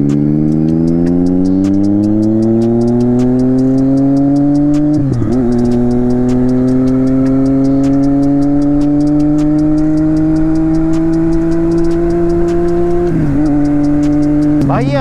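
Triumph Street Triple 675's inline-three engine heard from the rider's seat, pulling under throttle. Its pitch climbs, drops briefly at an upshift about five seconds in, climbs slowly again, and drops at another upshift near the end.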